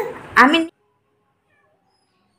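A baby's short vocalisation, a couple of brief calls that bend up and down in pitch, in the first moment, after which the sound cuts out to silence.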